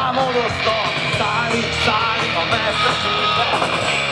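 Live rock band playing on an amplified stage: electric guitars, bass and drums, with a melodic line weaving over them.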